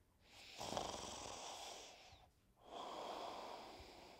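A person breathing loudly: two long, noisy breaths of about two seconds each, with a short pause between them.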